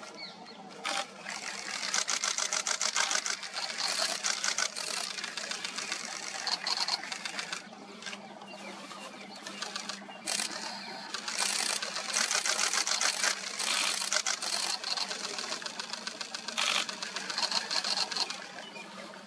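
Camera shutters firing in rapid continuous bursts: several runs of fast, even clicks, each lasting one to two seconds, with short pauses between.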